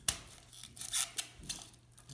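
Several sharp clicks and light knocks, the loudest right at the start, from hands handling an electrical box and its wires.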